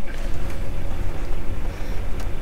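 Steady low rumble of an idling semi-truck diesel engine, heard from inside the cab.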